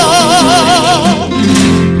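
Cádiz carnival comparsa music: a voice holds one long note with a wide, even vibrato for about a second and a half over Spanish guitar accompaniment, then the note ends and the guitars carry on.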